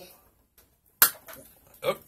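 A single sharp click about a second in as a small ball bearing is pressed into the hole of a clear acrylic card and gives way, going through too far.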